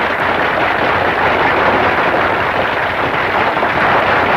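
Audience applause: a dense, steady clatter of many hands clapping at the end of a song.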